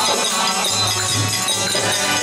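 Harmonium playing held reed chords and melody as devotional chant accompaniment, with clinking metal hand percussion over it.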